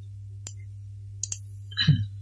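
Computer mouse clicks: a sharp one about half a second in and two close together past the one-second mark, over a steady low electrical hum on the recording. A short, louder noise comes just before the end.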